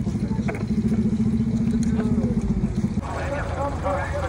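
A small engine running steadily with a fast, even pulse, cutting off suddenly about three seconds in; voices follow.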